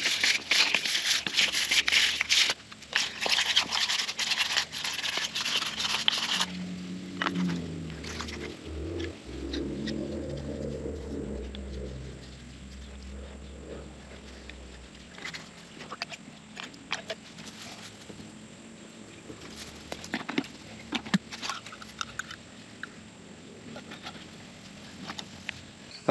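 Abrasive paper rubbed back and forth over the end of a PVC pipe, a dense rasping scrape that stops abruptly about six seconds in. Quieter handling follows, with scattered light clicks and taps.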